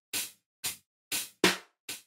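Programmed hip-hop drum-machine beat at 60 BPM in 4/4, played as a metronome. Short, sharp hits come about every half second, with a louder hit about one and a half seconds in.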